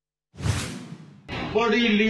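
A news-graphic whoosh transition effect about a third of a second in, fading out over roughly a second. Just past a second in, a louder sound with several held pitches starts and carries on to the end.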